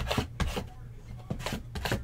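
Cardboard trading-card vending boxes handled and slid against each other by hand: a series of short scraping, rustling strokes, about six in two seconds, over a low steady hum.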